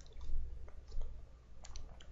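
A few short clicks, spaced irregularly, over a low steady hum.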